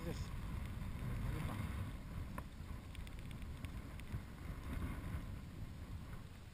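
Wind noise on the microphone, with a few faint ticks from the spinning reel and rod while a hooked fish is played at the surface.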